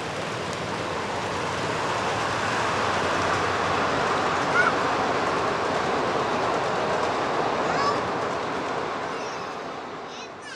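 Miniature ride-on railway train running across a trestle, its wheels on the rails making a steady noise that swells toward the middle and fades near the end.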